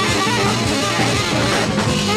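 Live 1969 jazz-rock big band recording playing: electric guitar over bass and drum kit, with the rest of the band sounding at an even, full level.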